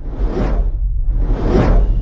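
Logo-intro sound effects: two whooshes about a second apart over a steady deep low rumble.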